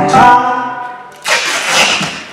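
A music backing track ends on a loud final chord that rings and dies away over about a second. Just after, a short noisy burst with no clear pitch rises and falls.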